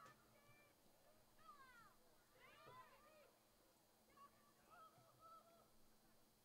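Near silence, with a few faint high-pitched shouts from distant voices: two bending calls in the first half and flatter ones later on.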